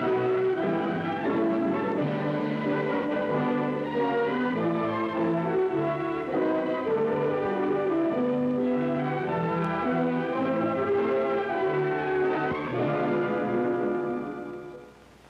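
Orchestral opening theme music, led by brass, playing a full melody at a steady level.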